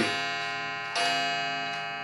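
A chiming clock striking at an even pace of about once a second: a bell-like ring that fades slowly between strikes, with a fresh strike about a second in.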